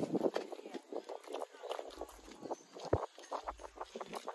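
Footsteps knocking on a wooden footbridge: a quick, irregular run of knocks, with one louder thump about three seconds in.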